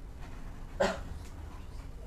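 A single short, sharp cry or bark, a little under a second in, over a low steady background hum.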